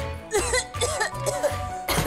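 A woman coughing several times in quick succession, choking on cigarette smoke after a drag, over background music with a steady bass beat.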